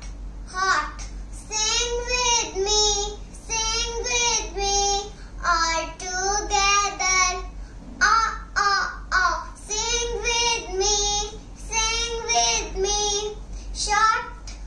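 A young girl singing a short rhyme unaccompanied, in short phrases of held notes with brief breaks between them.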